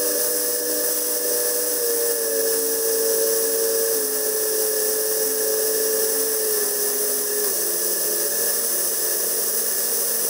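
Sting S3's Rotax 912 engine and propeller drone in flight, heard over rushing airflow. The pitch steps down several times as power is pulled back on the descent toward landing.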